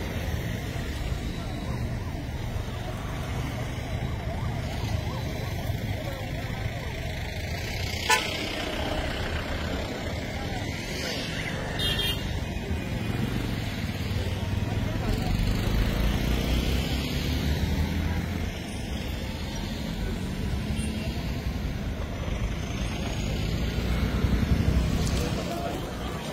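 Outdoor traffic ambience: a steady low rumble of vehicles with faint voices in the background, and an engine note that rises and falls in the second half. A single sharp click comes about eight seconds in.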